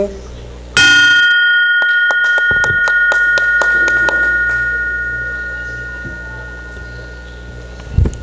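Brass Rotary club bell rung once, its clear tone ringing on and slowly fading over about seven seconds, marking the new club president taking office. A few hand claps sound a second or so after it is rung.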